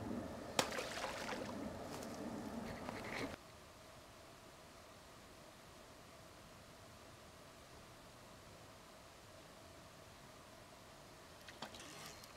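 Rustling and handling noise with one sharp click about half a second in. It cuts off abruptly a little over three seconds in, leaving near silence with a faint steady hum for the rest.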